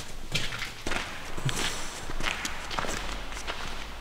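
Footsteps on a rubble-strewn floor, an irregular run of short, gritty steps several times a second.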